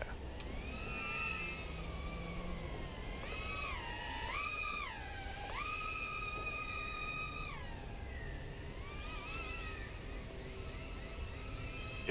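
A micro whoop quadcopter on 7x20 mm coreless motors flying some way off. Its thin, high-pitched propeller whine rises and falls with the throttle and holds steady for a couple of seconds just past the middle.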